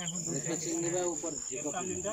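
Crickets trilling steadily at a high pitch, with men's voices talking underneath.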